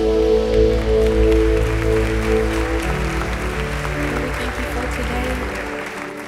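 Live worship band music: sustained keyboard chords over a low bass note, the pad slowly fading, with the congregation's applause building from about two seconds in.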